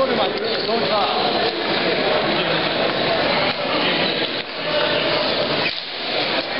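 Many men's voices talking over one another, a steady babble of chatter with no single voice standing out, from a crowd of players filing through a post-game handshake line.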